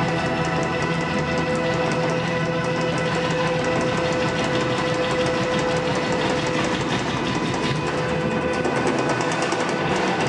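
Live blues-rock band playing an instrumental passage: electric guitar holding a steady sustained note over fast, busy drumming and bass.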